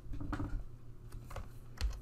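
Computer keyboard keys pressed one at a time, several separate clicks spread over the two seconds, as a keyboard shortcut and entry are keyed in.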